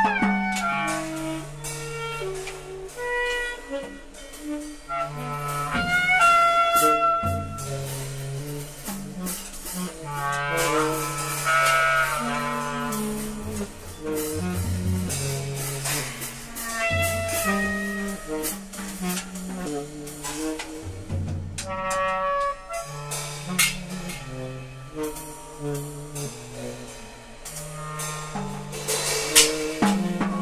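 Free-jazz improvisation by clarinet, tenor saxophone and drums: the two horns play long held notes and wandering lines over scattered cymbal and drum hits.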